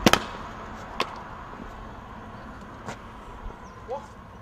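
Steady outdoor street noise with a few sharp cracks or knocks: the loudest, a quick cluster of strokes, right at the start, another about a second in, and two fainter ones near the end, followed by a short rising chirp.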